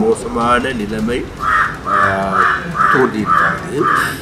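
A bird calling in a quick, even series of about seven calls, two to three a second, starting about a second and a half in, over a man speaking into microphones.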